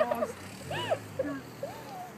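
A person sobbing during a tearful embrace: a few short, high cries, each rising and falling in pitch.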